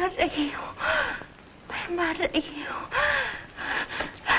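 An old woman gasping hard for breath, about two strained gasps a second, with short moaning cries between them.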